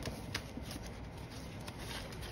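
Paper banknotes rustling as a small stack of bills is handled and tucked into a clear plastic binder pouch, with many light crinkly ticks.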